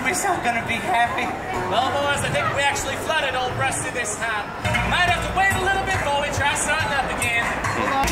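Live stage music: voices singing and calling out over acoustic guitar, with a low steady rumble coming in about halfway through.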